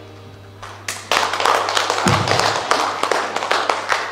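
Small congregation applauding, starting about a second in after a short lull, over a steady low hum.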